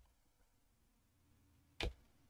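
Near silence: quiet room tone, broken near the end by a single short keyboard keystroke as the command is entered.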